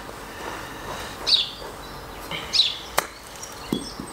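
A wedge chipping a golf ball: one sharp click of clubface on ball about three seconds in. A bird chirps twice before the strike.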